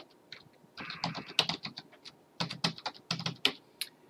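Typing on a computer keyboard: two quick runs of keystrokes, then a single key tap near the end.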